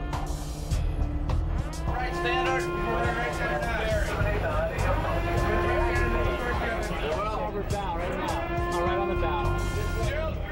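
Background music with long held tones over a steady low rumble. Indistinct voices come in over it about two seconds in.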